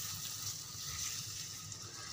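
Sliced onions with cumin, cloves and black peppercorns frying in oil in a steel karahi: a soft, steady sizzle.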